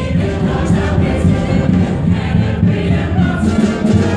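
A musical theatre ensemble singing together with the pit band, in a live stage number.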